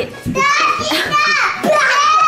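Young children's high-pitched excited voices, laughing and squealing, with a long high squeal near the end.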